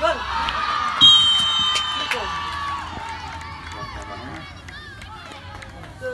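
Spectators shouting and cheering together right after a free kick, loudest about a second in with a long high-pitched shout, then dying away over the next few seconds.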